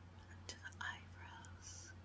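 Soft, quiet whispering close to a microphone, with a couple of small mouth clicks about half a second in and a short hiss near the end.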